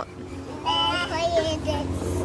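A toddler's high-pitched, singsong voice: one drawn-out sung sound starting a little over half a second in and held, wavering slightly, for about a second.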